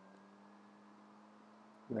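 Faint, steady low electrical hum in a quiet room, with no other activity.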